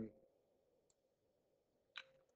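Near silence with two soft computer mouse clicks, a faint one about a second in and a sharper one near the end, as a text box is dragged across the screen.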